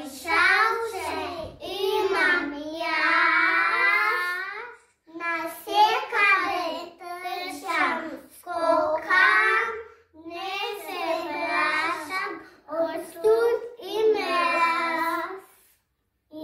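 Young children singing together without accompaniment, in short phrases with brief breaths between them and one longer held line about three seconds in.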